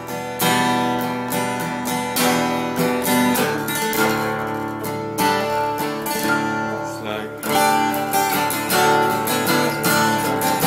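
Ibanez copy of a Gibson Hummingbird acoustic guitar strummed with a nylon pick in double drop D tuning, chords struck in a steady rhythm and ringing between strums.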